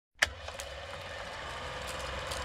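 Old-film projector sound effect: a sharp click as it starts, then a steady low hum and hiss with a few faint crackles.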